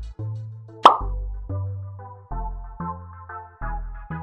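Upbeat electronic background music with a steady beat and bass line, cut by a single short pop about a second in that is louder than the music.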